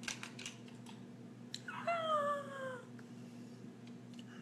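A few light clicks of items being handled, then a cat meows once: a single call, falling slowly in pitch, about a second long.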